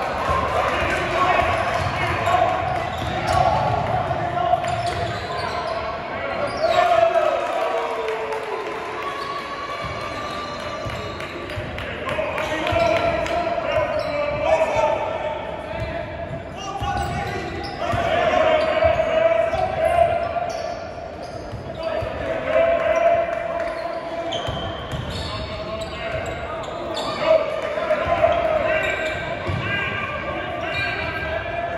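Ball bouncing on a hardwood basketball court during live play, among shouting and chatter from players, benches and spectators, echoing in a large gymnasium.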